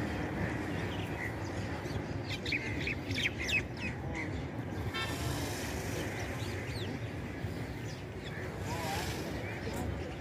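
Outdoor murmur of people's voices, with short bird chirps clustered about two to four seconds in and a brief pitched call around the middle.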